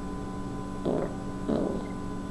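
Steady electrical hum on the recording, broken by two short, soft huffs of breath from the man, about a second in and again half a second later.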